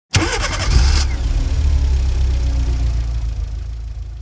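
Logo intro sound effect: a sudden hit with a bright hiss lasting about a second, then a low rumble that slowly fades out.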